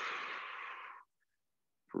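A person's long exhale through the mouth, a breathy hiss about a second long that cuts off sharply, during a slow marching exercise.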